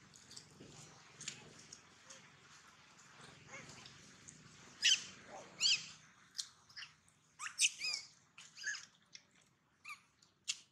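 A baby macaque's short, high-pitched squeaks, coming in a string through the second half, some bending up and down in pitch.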